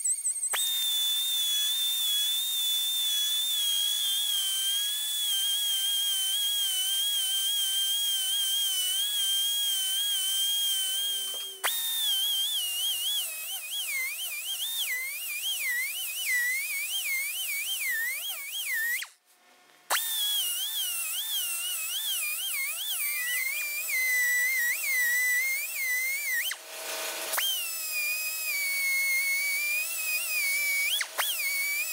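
High-speed die grinder whining as it grinds a hardened steel bearing roller into a ball nose end mill, first with a grinding stone and later with a sanding drum. The pitch is steady at first, then wavers up and down as the tool is pressed on and eased off the work; it stops briefly about two thirds of the way through and starts again.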